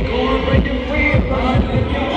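Rap delivered live into a microphone over a hip-hop beat with deep, regular bass kicks.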